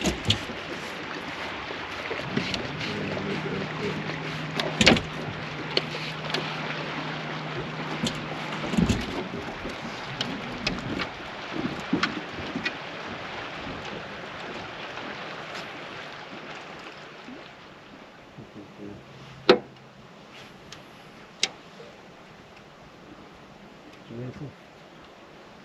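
Small fishing boat on the water: a hiss of wind or water that slowly fades, a low steady hum from about three to eight seconds in and again briefly later, and a few sharp knocks on the boat.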